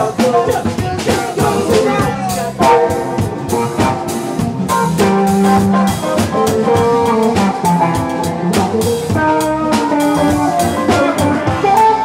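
Live rock band playing an instrumental jam: drum kit hits over bass, guitars and keyboards, with a lead line of held notes moving up and down in pitch.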